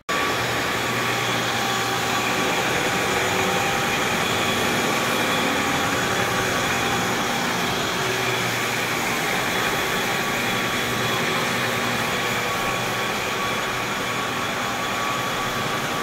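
Rotary floor buffer running steadily on a hardwood floor, an even motor hum with a faint steady whine as the pad scrubs the old finish down for recoating.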